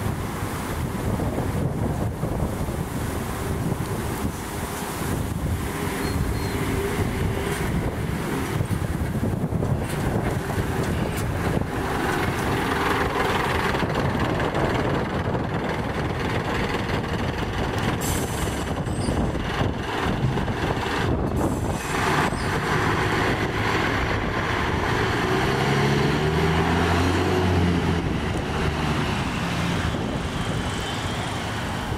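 Diesel city buses running and pulling away from a stop, a steady mechanical drone. Near the end an engine note climbs in steps as a vehicle accelerates.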